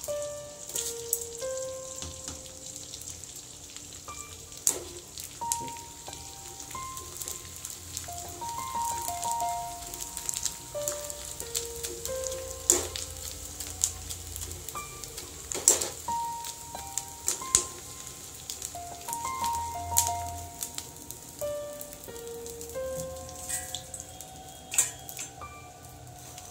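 Edible gum (gond) crystals sizzling as they fry and puff up in hot ghee, with scattered sharp crackles, under a light melodic background music tune.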